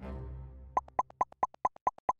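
A low musical note fades, then starting almost a second in comes a quick run of short, bright pops, about four or five a second. This is the popping sound effect of chat-message bubbles appearing one after another.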